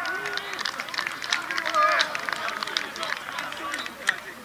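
Several voices shouting and cheering at once, with a few short claps or knocks among them: a goal celebration.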